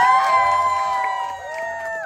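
A group of people singing and cheering together: several voices slide up into one long held note and break off together near the end.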